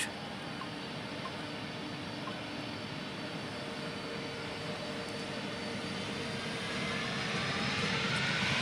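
Boeing 747's four jet engines spooling up for takeoff, heard from a distance as a steady jet rumble that grows gradually louder, with a faint rising whine near the end.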